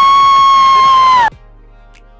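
A person's long, high-pitched held yell that swoops up, holds one note and dips slightly at the end before it cuts off abruptly about a second and a half in. Faint music with a soft, regular beat follows.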